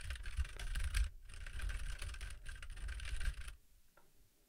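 Rapid, irregular typing on a computer keyboard, a quick run of keystrokes that stops about three and a half seconds in.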